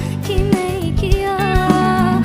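A woman singing a melody into a microphone, with held, wavering notes, over backing music with a steady beat.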